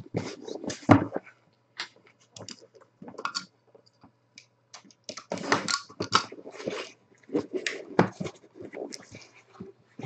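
Cardboard box being handled and opened by hand: irregular scrapes, rustles and short knocks as the inner box slides out of its outer carton and its lid is lifted.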